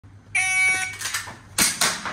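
Electronic shot timer giving its start beep, a steady electronic tone about half a second long. Then, near the end, two quick shots about a fifth of a second apart from a Tokyo Marui Glock 17 gas-blowback airsoft pistol.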